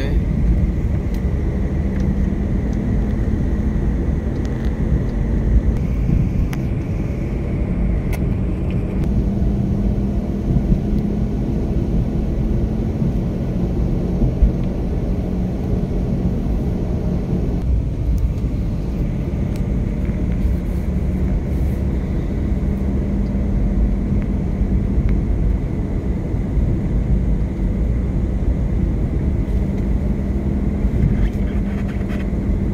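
Inside a moving car's cabin: steady low rumble of road and engine noise with a faint hum, and a few small knocks about halfway through.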